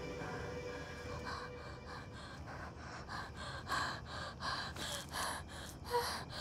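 A woman's quick, frightened breathing: short gasping breaths that come about every half second from a second in, with a sharper gasp just before the end.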